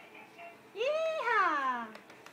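A toddler's single drawn-out vocal sound, a sort of squeal or whine that rises in pitch and then slides down, starting a little under a second in and lasting about a second.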